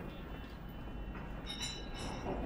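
A steady low rumble with a brief high-pitched squeal near the end.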